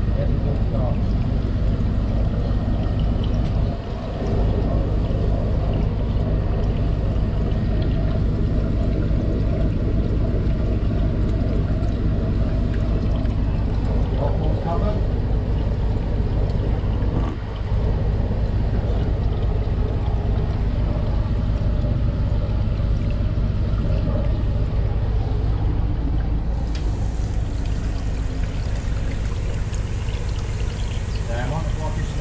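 High-pressure drain jetter's engine running with a steady drone, dipping briefly twice. A higher hiss comes in near the end.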